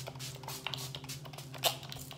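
MAC Fix+ facial mist pump bottle spritzing: a quick run of short sprays, several a second, misting the face.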